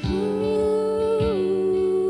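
A woman humming a wordless melody, long held notes that glide down step by step, over a plucked acoustic guitar.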